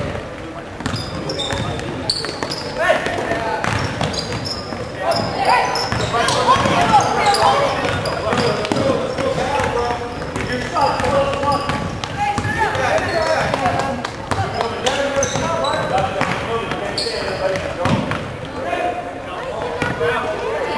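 Basketball game sounds in a gym: a ball being dribbled on the hardwood court, with spectators' voices and shouts echoing through the hall.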